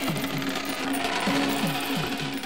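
Cartoon sound effect of a crowd of coins rolling and clinking along a road, over background music.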